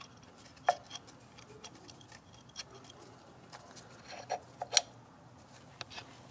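A few sharp small clicks and knocks of the injector-puller tool attachments being twisted a quarter turn onto the fuel injectors by a gloved hand: one about a second in, then a quick cluster near the end, the loudest of them there.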